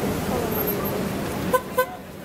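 Voices chattering, then two short, sharp beeps about a quarter second apart near the end.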